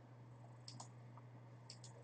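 Faint computer mouse clicks: two quick pairs about a second apart, over a low steady hum.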